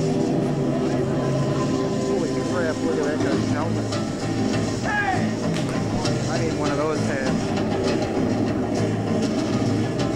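Live stage-show music with sustained low drone notes. Over the middle of it, voices call out with rising and falling pitch.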